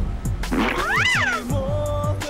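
A single cat-like meow, rising and then falling in pitch, over background music with a steady beat.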